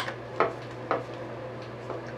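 A few small clicks and taps, four in two seconds, from the plastic housing of a small water-speaker being handled as its back-cover screws are put back in.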